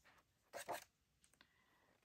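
A coloring book's paper page being turned by hand: one short, soft rustle about half a second in, then a couple of faint ticks.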